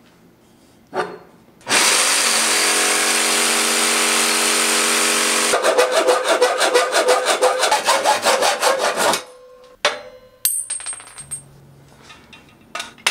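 Hacksaw cutting through square steel tubing by hand, in quick even strokes for about three and a half seconds that stop suddenly. Before it, a loud steady power-tool noise runs for about four seconds, and a few metal clinks follow near the end.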